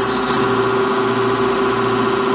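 Hydraulic pump and electric motor of a 400-ton rubber pad press running with a steady hum while the bolster rises into the rubber box, before the rubber makes full contact and pressure builds.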